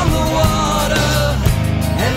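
A rock band recording playing loudly, with a steady drum beat, bass and a melody line over it.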